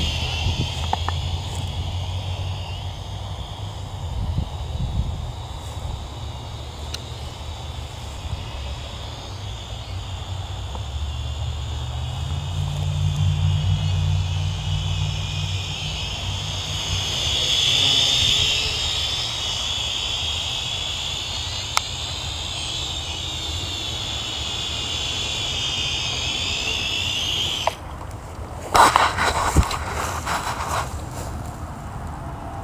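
Small quadcopter's electric motors whining overhead, their pitch rising and falling as it manoeuvres, with wind rumbling on the microphone. Near the end the motor whine stops abruptly, followed by a brief loud noise.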